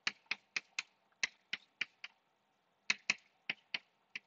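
Chalk tapping on a blackboard with each writing stroke: about a dozen sharp clicks, eight in quick succession, a short pause, then four more near the end.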